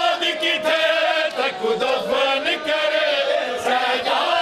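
Group of men chanting a Punjabi noha in the 'van' style, a mourning lament sung with long, wavering held notes.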